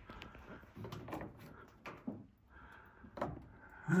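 A few light knocks and clicks from handling parts and the freshly lowered battery pack, scattered irregularly.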